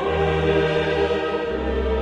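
Choral music with voices holding sustained chords over a deep bass note; the chord changes about one and a half seconds in.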